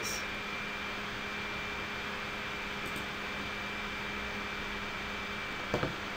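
Steady background hiss and low hum, the noise floor of the microphone and room, with a faint steady tone running through it. A single faint click comes near the end.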